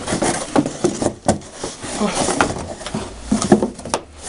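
A wooden sword case being pulled out of a long cardboard box: cardboard scraping and rustling, with a string of knocks as the wood bumps the box.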